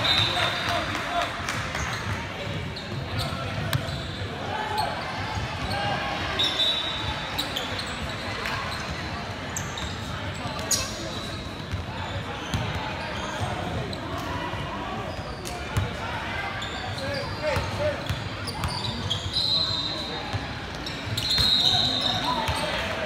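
A basketball bouncing on a hardwood gym floor among indistinct voices of players and spectators, echoing in a large hall. A few brief high-pitched tones come near the start, about six seconds in, and near the end.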